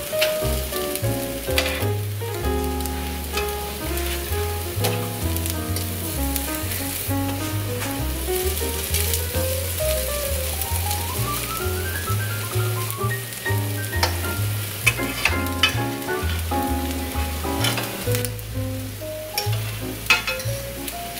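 Potato pancakes sizzling in a frying pan, with a metal spatula scraping and clicking against the pan now and then. Background music with a stepped bass line plays over it.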